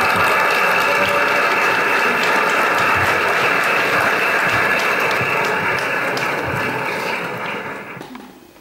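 An audience applauding in the projected talk, heard through the room's loudspeakers. The clapping is steady and dense, then fades away near the end.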